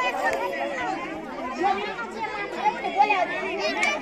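Many women's voices chattering at once, overlapping one another, with no drumming or singing.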